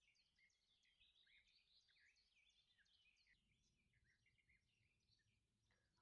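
Near silence, with very faint bird chirping in the background.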